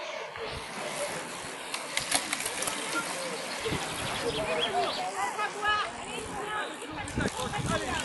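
Road racing bicycles passing close by, their tyres and drivetrains making a steady rush with short clicks, while roadside spectators' voices call out, strongest in the second half.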